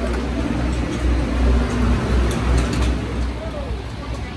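Wind rumbling on a phone microphone over general pit-area noise, with faint background voices and a few light ticks about two and a half seconds in.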